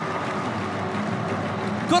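Steady, even background noise from a football broadcast's pitch-side microphones in a largely empty stadium, with no crowd cheering.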